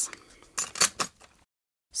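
Paper needle packets rustling and tapping as they are set down into a wooden sewing box: a few quick rustles about half a second to a second in.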